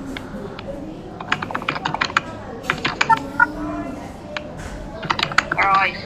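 Typing on a computer keyboard: bursts of quick, irregular key clicks, with a brief voice sound near the end.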